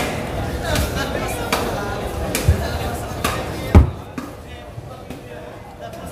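Several irregularly spaced knocks on a thick round wooden chopping block, the loudest a heavy thud nearly four seconds in.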